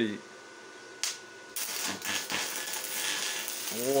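Stick (MMA) welding arc from a Deko 200 inverter welder: a brief scratch of the electrode about a second in, then the arc catches about a second and a half in and burns with a steady hiss.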